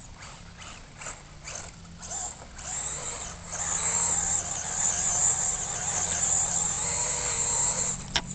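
Brushless RC buggy (3300kv 3652 motor on 3S LiPo) driven on dirt: the electric motor whines under throttle and the tyres churn the ground. Short throttle bursts come first, then from about three and a half seconds in a longer, louder run lasts until near the end.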